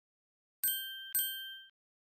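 Bell-like chime sound effect: two clear dings about half a second apart, each ringing briefly and fading away.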